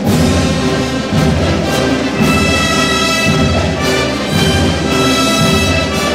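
A school marching band of brass and percussion playing, with held brass chords over a low beat that comes about once a second.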